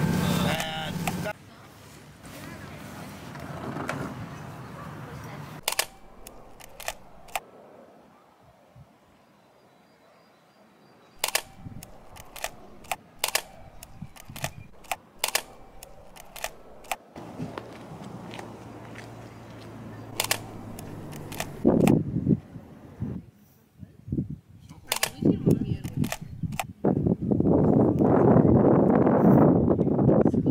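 A boat engine runs for about the first second and then drops away. Through the quieter stretch that follows come sharp single clicks at irregular intervals, typical of a film SLR's shutter. A rushing noise builds near the end.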